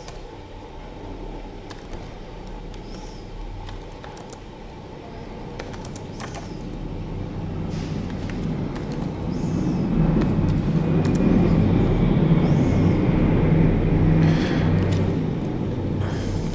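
Computer keyboard keys clicking as code is typed, under a low rumble that builds from about halfway through, is loudest a few seconds later and eases off near the end.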